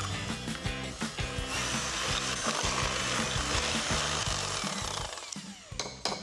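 Electric hand mixer running steadily, its beaters whisking an egg into creamed butter and sugar in a ceramic bowl, then slowing down near the end as it is switched off.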